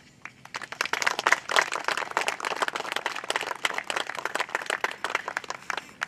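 A small seated audience applauding a speech: many hands clapping, building up within about a second and dying away near the end.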